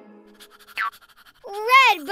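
A cartoon baby's wordless vocalizing: a short rising squeak about three-quarters of a second in, then a loud drawn-out "ooh" that rises and falls near the end, over soft background music.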